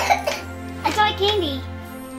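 A young child's voice vocalizing over steady background music.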